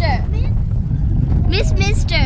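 Steady low rumble of a vehicle driving over a road, heard from inside it, with voices talking over it at the start and again near the end.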